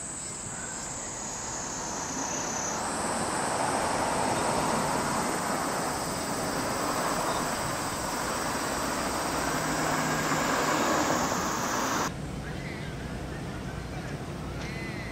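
Outdoor summer ambience: cicadas keep up a steady high-pitched drone over road traffic, which swells about two seconds in and holds until it cuts off suddenly near the end.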